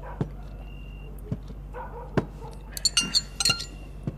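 Tableware clinking at a dinner table: a few separate sharp knocks, then a quick run of ringing, glassy clinks about three seconds in.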